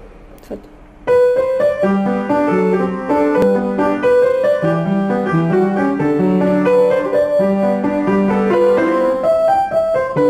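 Franz Sandner upright piano played with both hands, starting about a second in: a flowing melody over a repeating lower accompaniment figure.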